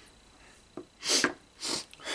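A man's two short, sharp breaths through the nose, about half a second apart, as he clears his nose, with a small click just before them.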